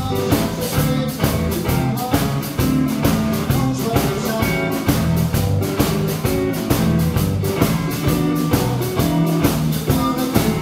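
Blues band playing live: electric guitar, bass guitar and drum kit, with a steady beat.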